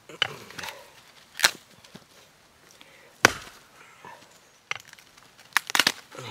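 Mora Outdoor camp axe with a boron-steel head chopping and splitting apple wood into kindling. There are single sharp strikes at about one and a half seconds and about three seconds, the second one the loudest, and a quick run of several strikes just before the end.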